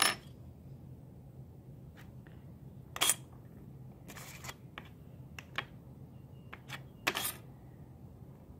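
A handful of short, sharp taps and clicks of small sculpting tools and hands against a wooden work table, the loudest about three seconds in and again near the end, over a faint steady low hum.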